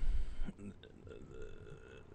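A man's brief, low throat sound in a pause in his speech, loud for under half a second at the start, followed by faint vocal murmuring.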